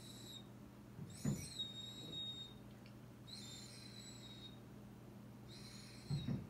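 Doberman whining faintly in a series of high-pitched whines, each about a second long and about two seconds apart, with short low grumbles about a second in and near the end.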